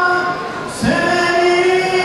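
Male choir singing a Turkish ilahi (Islamic hymn) in long held notes; the held note eases off briefly and the choir comes in on a new note a little under a second in.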